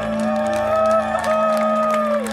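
Singers holding long final notes of a carol in harmony, each note sliding down as it ends, over a steady low hum from the sound system, with scattered claps.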